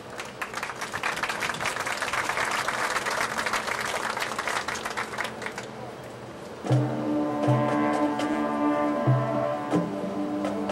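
Marching band playing: a rapid run of percussion strikes for about six seconds, then the brass comes in with held chords and a repeated low note about seven seconds in.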